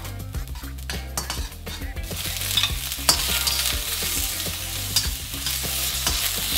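Metal spatula scraping and tapping against a steel wok as minced garlic fries in oil. About two seconds in, a louder, hissing sizzle starts as soaked shiitake mushrooms go into the hot oil, with the stirring and scraping going on.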